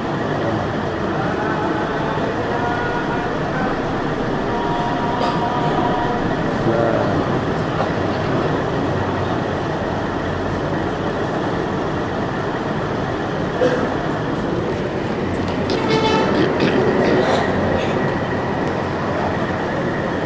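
Steady rumbling background din with faint, indistinct voices in it.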